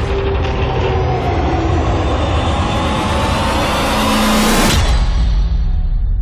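Trailer sound design: a dense rising swell with several pitches gliding steadily upward, building for about four seconds and then cutting off suddenly, leaving a deep low rumble.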